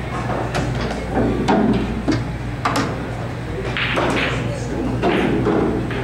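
Pool balls clicking against each other and knocking into the cushions after a straight pool shot: several sharp clicks and knocks, most of them in the first three seconds. Voices murmur in the background over a steady low hum.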